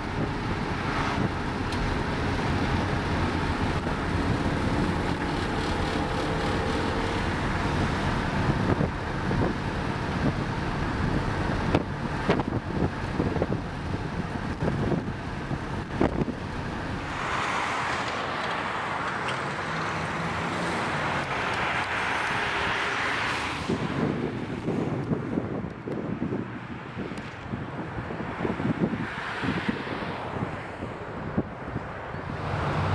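1973 Plymouth Barracuda's V8 engine running under way, heard from inside the cabin, with road and wind noise over the microphone. A louder rush of noise swells for several seconds past the middle.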